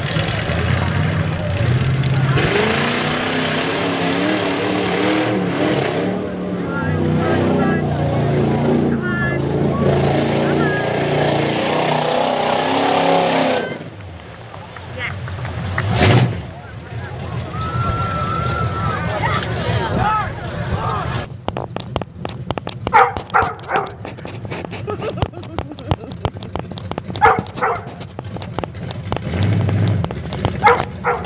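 Lifted 1982 Chevy pickup's engine revving hard during a truck pull, its pitch rising and falling, until it drops away about fourteen seconds in. A quieter stretch of scattered sharp clicks and short high sounds follows.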